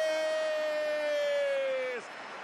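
Spanish-language football commentator's long held shout of the goalkeeper's name, "¡Sommer!", drawn out on one vowel that slowly falls in pitch and cuts off abruptly near the end, hailing a save.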